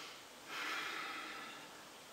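A person's faint breath drawn in, starting about half a second in and fading away over the next second and a half.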